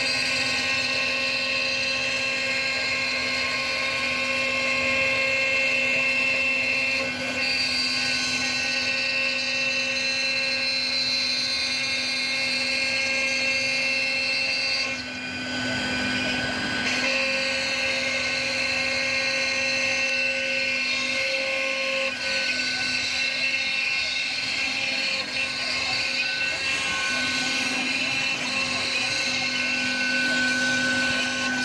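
CNC router spindle running with a steady whine as its end mill cuts into a wooden board. About halfway through, the sound dips briefly and its tone shifts.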